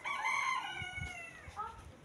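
A rooster crowing: one long call of about a second and a half, falling slightly in pitch near the end.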